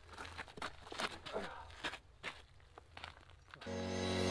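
Faint scattered clicks and rustles over a low steady hum. Soft background music fades in near the end.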